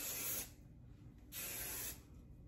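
Aerosol hairspray can giving two short sprays about a second apart, each a half-second hiss.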